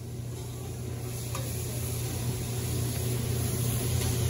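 Vegetables sizzling on a hibachi flat-top griddle as the chef stirs them with a spatula, growing gradually louder, over a steady low hum.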